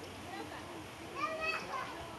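Children's voices, with one high-pitched call a little past a second in.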